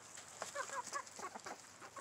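Chickens clucking softly in short, quiet calls while pecking at scattered food.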